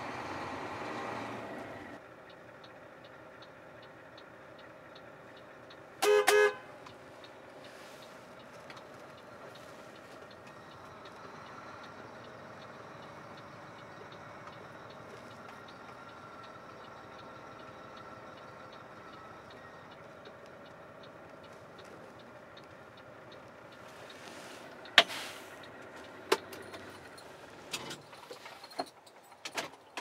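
A vehicle horn toots once, briefly, about six seconds in, over a faint steady background. Near the end come a few sharp knocks.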